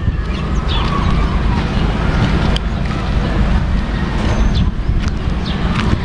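Wind rumbling steadily on the camera's microphone outdoors, with a few faint high chirps.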